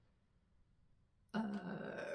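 Near silence, then a woman's drawn-out hesitation 'uh' starting about a second and a half in, held on one steady pitch.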